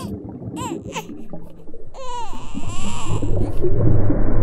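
A newborn baby crying in a few short wailing cries, over a low rumbling background that grows louder near the end.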